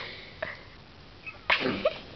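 A person's single short, explosive burst of breath through the nose and mouth, with a brief voiced edge, about three quarters of the way in, after a few faint handling clicks.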